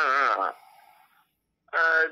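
A lone voice singing a devotional chant: a short wavering note at the start, a pause, then the next line beginning near the end.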